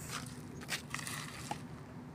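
Faint outdoor background with two short, light taps about three-quarters of a second apart.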